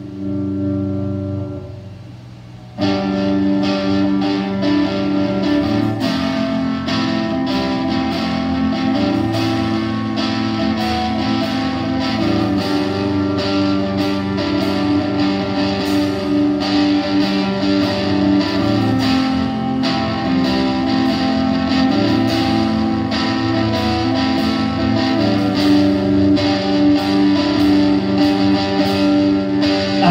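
Live rock band playing the instrumental intro of a song. An electric guitar chord rings out alone at first, then about three seconds in the full band comes in, with drums, bass guitar and electric guitars with effects and light distortion, and plays on steadily.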